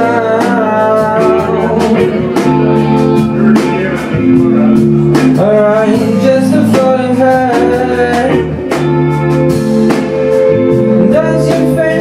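A live band playing a song, with electric guitar to the fore over a steady bass line.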